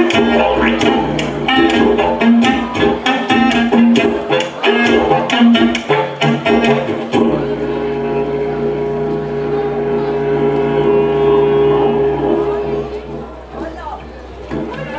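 Didgeridoo and clarinet playing live together. For the first half the didgeridoo drives a fast, pulsing rhythm. About halfway through it settles into a steady drone, with a long held woodwind note over it.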